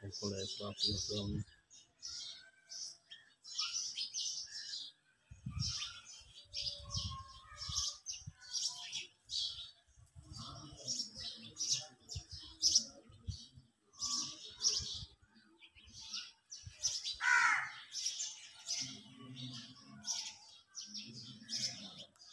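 Birds chirping: a busy run of short, high chirps repeating throughout, with faint voices in the background at times.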